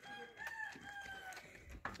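A rooster crowing faintly: one drawn-out call of about a second.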